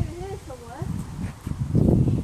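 Indistinct talking, with low rumbling noise on the phone's microphone that gets louder near the end.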